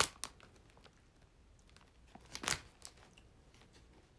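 A sharp click at the start, a few fainter clicks, and one short rustle about two and a half seconds in: handling noise close to the microphone.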